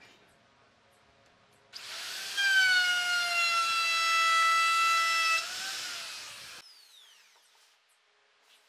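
DCA electric router starting up and cutting along the edge of a wooden board, its high motor whine dipping slightly in pitch under the cut for about three seconds. It is then switched off and spins down with a falling whine.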